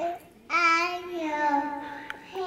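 A toddler girl singing one long, drawn-out note into a toy microphone. It starts about half a second in and slowly sinks in pitch.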